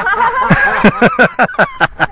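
People laughing in a run of short, quick bursts.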